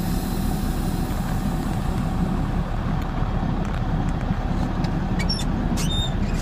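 Straight truck's engine running with a steady low rumble, heard from inside the cab as the truck moves off in a low gear.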